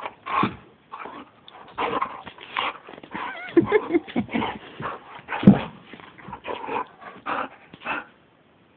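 A pet dog vocalizing in a long, irregular run of short calls, some with a wavering pitch, the loudest about five and a half seconds in.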